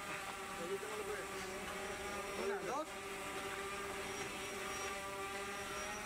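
Steady droning hum of a running motor, many even tones held at one pitch, with a brief burst of voices about two and a half seconds in.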